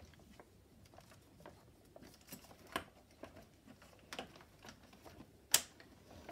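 Faint, scattered clicks and knocks of a Bumprider sibling board's attachment hooks being worked and locked onto a stroller frame, with a sharper click near the end.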